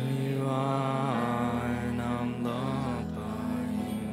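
Live worship song: a man and a woman singing together over strummed acoustic guitar, holding long notes.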